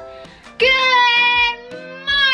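A young girl singing a long held note of about a second, then starting another at the end, over quieter backing music.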